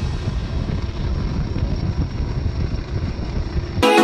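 Steady, rumbling noise of a boat under way on open water, engine and water wash mixed with wind noise. Music cuts back in suddenly just before the end.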